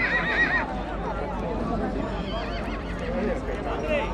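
A horse whinnying: a high, quavering whinny that breaks off about half a second in, then a fainter, higher one a little past the middle.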